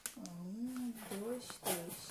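A person's voice sounding without clear words, with short crackles of clear plastic packaging being handled, most plainly near the start and about one and a half seconds in.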